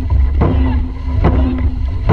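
Dragon boat crew paddling in unison, the paddles striking the water together in an even rhythm of a little over one stroke a second, over a heavy wind rumble on the microphone.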